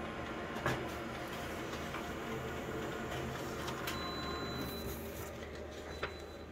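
Office multifunction copier running a print job: a steady mechanical hum, with a click about a second in and a thin high whine joining about four seconds in.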